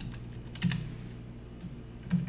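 Computer keyboard keys being typed in a few scattered keystrokes while code is entered, over a steady low hum.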